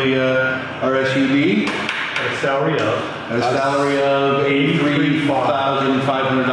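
A voice speaking in drawn-out, chant-like syllables, with some long held tones.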